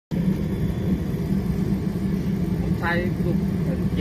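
Kerosene-fired forced-air heater running with its burner lit: the fan and flame make a steady low roar.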